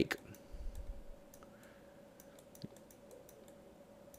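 Faint, quick clicks and taps of a stylus on a drawing tablet while a word is handwritten, mostly in the first two seconds, with one soft tap a little later, over a faint steady hum.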